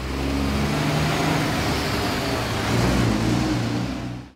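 Heavy snow-laden dump truck's diesel engine running steadily as it drives past, with tyre noise on the slushy road, blending into passing car traffic.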